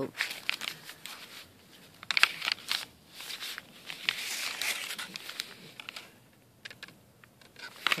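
Stiff coffee-dyed paper pages and cards of a handmade junk journal rustling and crinkling as they are handled, with a card slid out of a pocket. A few sharp crackles come about two seconds in, and the handling is quieter near the end.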